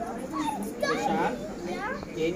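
Children's voices: a child talking excitedly while playing, in short high-pitched phrases.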